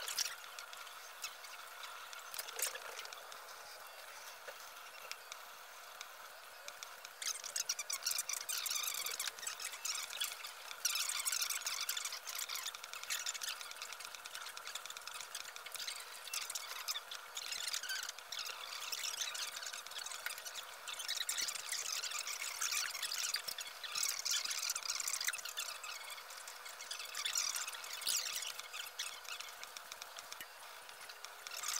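Pen-plotter robot's stepper motors running with a steady whine of several tones, broken by long stretches of fast, crackly ticking as the XY gantry moves the marker quickly about the paper.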